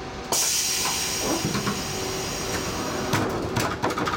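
Sudden loud hiss of compressed air released by a train standing at a platform, starting about a third of a second in and carrying on while slowly easing off. A few short knocks near the end.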